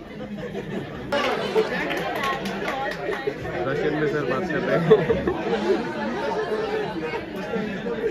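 Many people talking at once, a room full of students chattering over each other, louder from about a second in.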